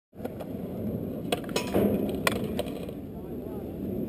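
Skateboard wheels rolling on concrete, a steady low rumble, with a handful of sharp clacks, the loudest a little past two seconds in.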